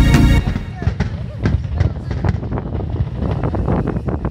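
Background music that cuts off about half a second in, followed by fireworks: an irregular run of sharp pops and crackles over a low rumble.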